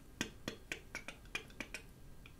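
A quick run of about eight short, sharp clicks or taps over about a second and a half, a few per second and unevenly spaced.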